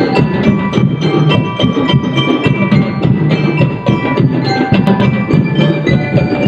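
Drum and lyre band playing: bell lyres ring out a melody of struck notes over a busy beat of drums.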